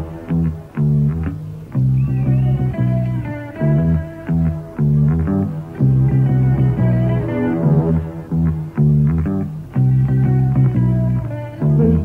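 A rock band playing live without vocals: a repeating bass guitar line leads, with electric guitar notes over it. The recording sounds muffled, with little treble.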